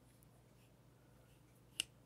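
Near silence, then one sharp click near the end: the lockback of an AG Russell Sunfish pocketknife letting go as its very tight lock lever is pressed down far enough to free the blade.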